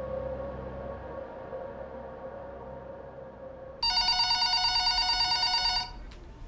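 A low, sustained music drone fades out, then about four seconds in a telephone rings once: a loud, warbling electronic ring lasting about two seconds that stops abruptly.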